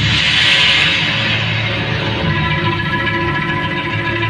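Background music for a stage play, with held notes throughout and a bright, hissing swell at the start that fades away.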